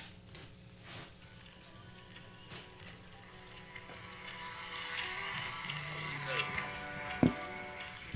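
A recorded song starting to play from a phone, faint at first and growing louder through the second half, after a few faint clicks.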